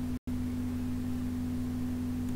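Steady electrical hum: one clear, even tone over a lower drone, with no other activity. It cuts out completely for an instant about a quarter of a second in, then resumes unchanged.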